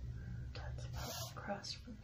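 Quiet, half-whispered speech from a woman: a few brief muttered syllables over a low, steady background hum.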